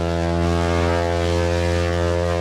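A ship's horn sounding one long, low blast at a steady pitch.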